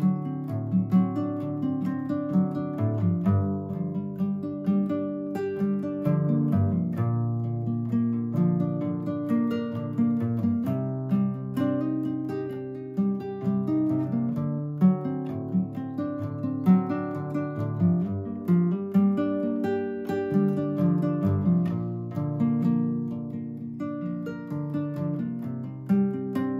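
Nylon-string classical guitar played with the fingers, picked chords in a steady, unbroken rhythm through a minor-key progression.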